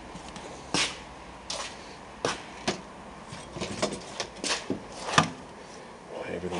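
Light knocks and clicks, about a dozen spread unevenly, as a sport mirror is held and shifted against a car door to try its fit. The sharpest knock comes a little after five seconds in.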